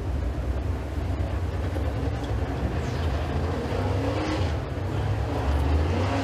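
Dirt super late model race car's V8 engine running on the track, a low rumble that grows louder as the car comes closer. About halfway through, the revs climb.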